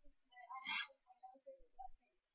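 Faint, broken murmur of a voice heard over a video-call line, with a brief breathy sound a little under a second in.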